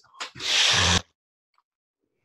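A man imitating a big, deep sniffing inhale through the nose: a brief sniff, then a longer hissing intake of breath lasting about two-thirds of a second, ending suddenly about a second in.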